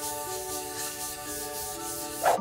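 Background music with held notes that change pitch, over a cloth pad rubbing finishing oil back and forth on a maple cutting board.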